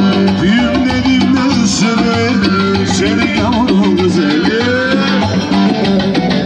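Live Turkish folk dance tune (oyun havası) played on an electronic arranger keyboard with a steady programmed rhythm, joined by a string instrument. The melody winds and ornaments over a held low note.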